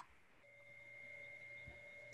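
Near silence with a faint steady tone that starts about half a second in, a higher pitch with a lower one beneath it, held without change; a tiny click at the very start.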